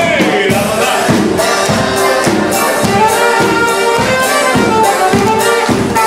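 A live wedding band playing a dance song with a steady beat, with guests clapping along in time.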